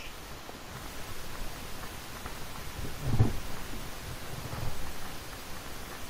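Steady background hiss of stream audio, with a faint muffled low sound about three seconds in and another weaker one shortly after.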